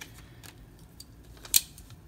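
A few small clicks of a Microtech UTX-70 pocket knife being handled and set down, the loudest a single sharp click about one and a half seconds in.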